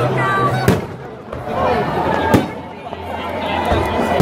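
Aerial firework shells bursting, two sharp bangs about a second and a half apart, over the chatter of a crowd.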